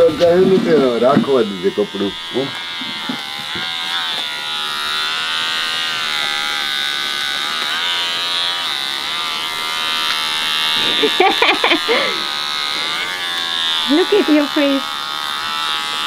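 Electric hair clippers running with a steady buzz as they cut a child's hair.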